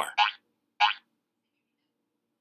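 Two short cartoon sound effects about half a second apart, each lasting well under a quarter second.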